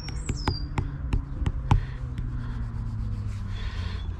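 A flying insect buzzing steadily, with scattered light clicks and taps throughout and a short high bird chirp in the first second.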